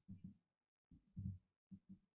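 Near silence, with a few faint, short low thumps.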